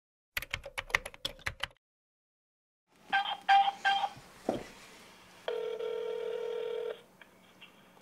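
A telephone call being placed: a quick run of about eight button clicks, then three short dialing beeps, a click, and a steady ringing tone lasting about a second and a half as the line rings.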